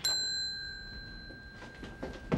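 A brass dome counter service bell struck once: a single bright ding that rings on and fades away over about two seconds.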